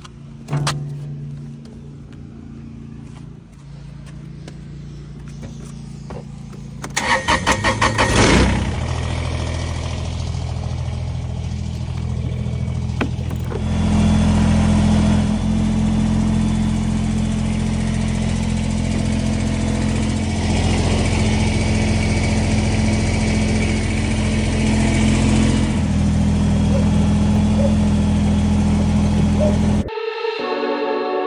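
Compact tractor engine running, with a burst of rapid knocking about seven seconds in, then a steady run that grows louder from about halfway through.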